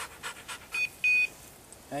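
A dog panting quickly, then a pair of high electronic beeps about a second in, a short one followed by a longer one. The beep pair repeats about every two seconds, like an automatic beeper.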